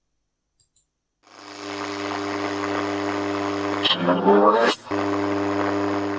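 AM radio static from a software-defined radio receiver: a steady buzz with hiss that starts about a second in. Near the middle a short voice-like fragment rises in pitch through the noise, the kind of fragment a psychophony session listens for as a spirit's reply.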